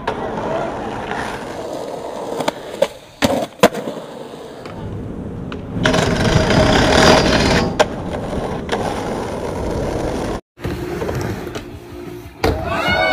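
Skateboard on concrete: wheels rolling, with several sharp clacks of the board popping and landing, and a louder, rougher stretch of rolling about six seconds in. There is a brief dropout near the end.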